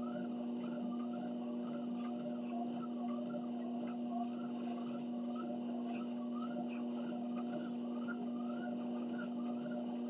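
Motorized treadmill running with a steady hum while a person walks on the belt; a fainter part of the sound rises and falls in an even rhythm of about two steps a second.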